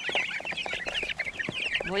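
A crowd of three-week-old broiler chicks peeping continuously, many short high chirps overlapping, with a few light taps among them.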